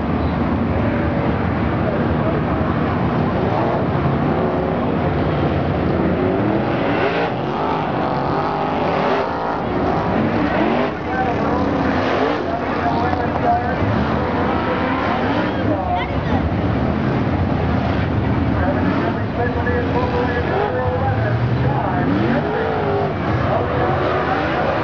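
Several dirt late model race cars running around a clay oval, their V8 engines rising and falling in pitch as they accelerate and pass.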